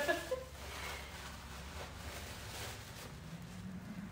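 Faint rustling of tissue paper being pulled out of a paper gift bag, over a low steady room hum.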